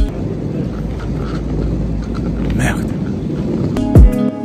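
Low, steady rumble of a moving commuter train heard from inside the carriage, with indistinct voices in the background.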